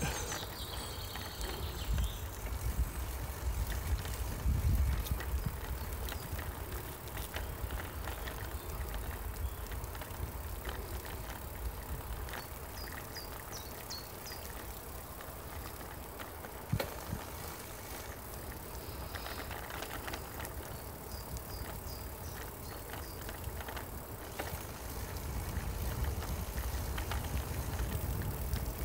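A bicycle rolling along a tarmac cycle path, heard as a steady low rumble with scattered light clicks and one sharper knock a little past halfway.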